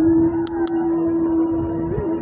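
Music with one long, steady held note over fainter tones, and two sharp clicks close together about half a second in.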